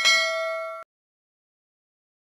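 Notification-bell 'ding' sound effect of a subscribe-button animation: one bright ring of several steady tones that fades a little and cuts off sharply under a second in.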